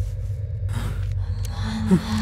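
A short sharp gasp about a second in, over a low, steady film-score drone. Near the end a brief downward-sliding sound is the loudest moment.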